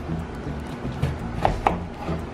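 Chef's knife slicing through a lemon on a plastic cutting board, with two sharp knocks of the blade on the board about one and a half seconds in, over background music.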